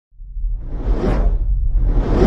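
Cinematic whoosh sound effects over a deep, steady rumble: one swelling whoosh peaks about a second in, and a second begins building near the end.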